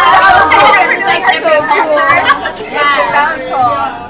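Several women talking over one another excitedly.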